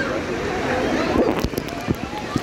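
Pool crowd noise: scattered distant voices and shouts over water splashing, with a few sharp splashes or knocks in the second half.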